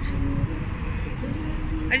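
Steady low rumble of city street traffic with faint voices in the background. A high voice starts speaking right at the end.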